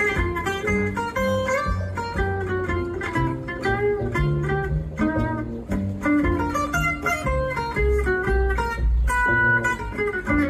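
Live jazz band instrumental: a Selmer-style gypsy jazz acoustic guitar takes a solo of quick single-note runs, with bass notes underneath.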